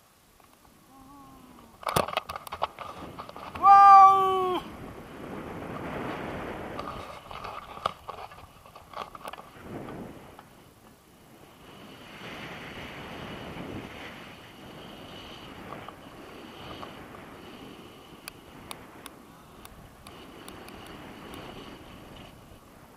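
A brief, loud, high-pitched wordless cry from a person, lasting about a second, about four seconds in. Wind rushes over the microphone through the rest, with a crackle of clicks just before the cry.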